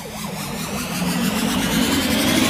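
Sound-effect riser for an animated logo: a steady engine-like drone with a faint rising whine, growing steadily louder.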